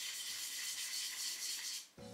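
Steady scratchy rubbing across the surface of a lacquered wooden board, stopping sharply just before the end.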